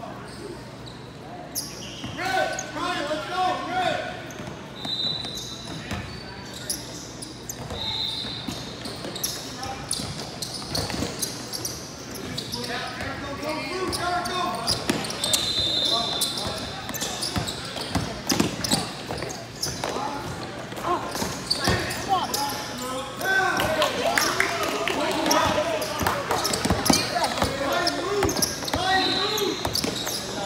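Basketball game sounds in a large hall: a ball bouncing on the court and players and spectators talking, with a few short high-pitched squeaks.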